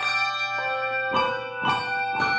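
Brass handbells played as a trio, a new bell struck about every half second, each note ringing on and overlapping the next as a slow melody.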